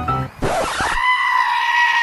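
A single long high-pitched cry, held steady for about a second and a half and dropping in pitch as it ends, with a short burst of noise just before it.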